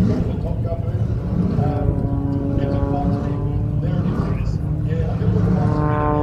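Propeller engine of an aerobatic plane droning steadily overhead as it flies its loops, with indistinct voices underneath.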